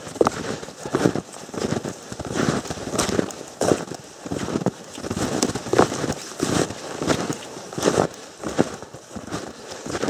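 Snowshoe footsteps crunching in packed snow at a steady walking pace, about three steps every two seconds.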